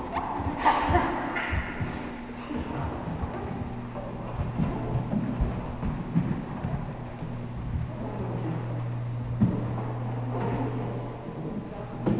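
Dancers' feet thudding and stepping irregularly on a studio floor as they turn and travel, over a steady low hum.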